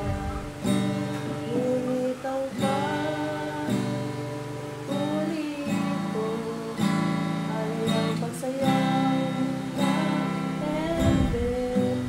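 A woman singing while strumming chords on a steel-string acoustic guitar, with a strong strum every second or two under a wavering vocal line.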